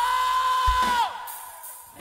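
Live rock band holding one long high note that drops away sharply about a second in, with a kick-drum thump just before, followed by a brief lull with faint crowd noise.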